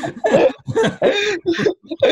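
A man laughing hard in several short breathy bursts.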